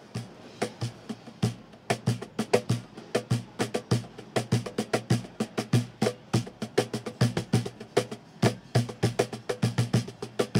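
Meinl Subwoofer Cajon played by hand in a quick, steady groove. Deep bass hits from its large box alternate with sharp slaps that carry the rattle of its snare strings.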